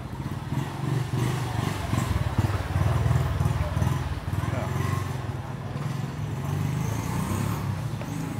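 A motorbike engine running close by, loudest in the middle seconds, with voices of people around it.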